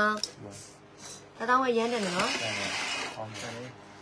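A woman speaks a short phrase. About two seconds in there is a second of scraping and rustling as a tray of glass tumblers is slid off the table.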